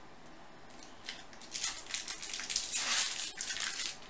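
Foil wrapper of a baseball card pack crinkling and tearing as it is opened by hand, in irregular crackly bursts that start about a second in.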